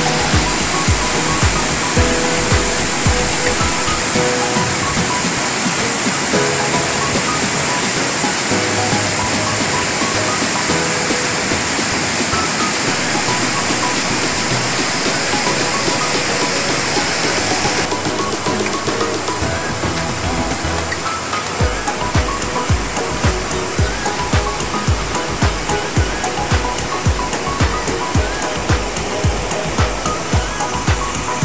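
A waterfall pouring down a sloping rock face and churning into a pool, a steady loud rush of water, under background music with a steady beat that fades in the middle and comes back strongly about two-thirds of the way through.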